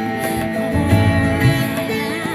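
Sitar playing a melody over a band backing with a pulsing low bass line.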